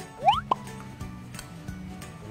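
A quick upward-sliding 'bloop' sound effect with a short blip right after it, over steady background music.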